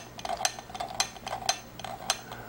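Reichert Phoroptor's sphere lens knob being turned through its detents in three-diopter steps, giving a string of sharp clicks, about two or three a second.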